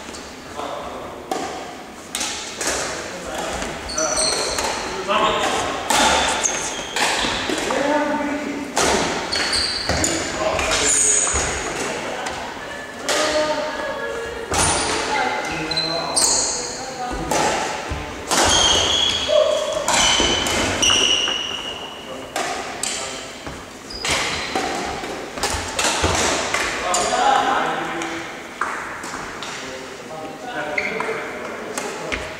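Badminton rally: repeated sharp strikes of rackets on a shuttlecock, with shoes squeaking on a wooden sports-hall floor, echoing in a large hall.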